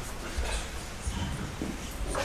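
Room noise of a seated audience in a hall: a steady low hum with faint, scattered small sounds and no speech.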